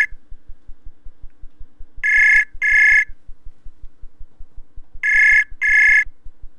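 Outgoing-call ringback tone from a browser call, double beeps: two short beeps about two seconds in and two more about five seconds in, while the call waits to be answered. Under it runs a steady fast low ticking, about five ticks a second.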